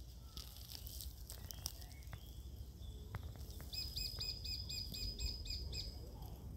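Wild bird song: a few scattered high chirps in the first couple of seconds, then, a little past halfway, a quick even run of about a dozen high repeated notes, some five a second, over a low background rumble.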